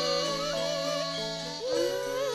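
A female sinden sings a Javanese campursari melody with wavering, ornamented notes over band accompaniment. Near the end her voice glides up into a held note.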